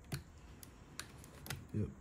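Four light plastic clicks, about half a second apart, as fingers work the snap tabs on the sides of an Audi MMI controller's plastic housing.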